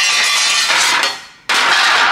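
Beaded sheet-metal panels sliding and scraping against each other and the bench as they are shuffled, in two rough rasping stretches: one about a second long, then another starting about a second and a half in.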